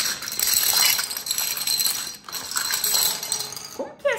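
Hard plastic toy domino pieces clattering and rattling onto a stone countertop as they are tipped out of a plastic bag, with the bag crinkling. The clatter runs nearly without a break and eases briefly a little past the middle.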